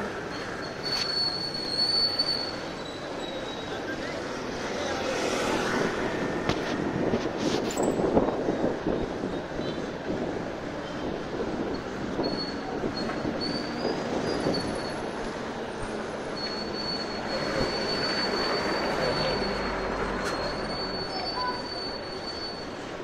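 Road traffic on a busy street: passing jeepneys and other vehicles, their engine and tyre noise swelling as they go by. A high thin whine comes and goes.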